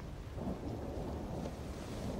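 Storm ambience: a low, steady rumble of thunder with rain.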